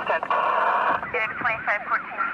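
Police two-way radio traffic through a radio speaker: a clipped voice, then a hiss of static lasting just under a second, then a voice transmitting again.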